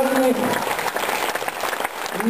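Theatre audience applauding, a dense patter of clapping that rises as a held note from the stage ends about half a second in.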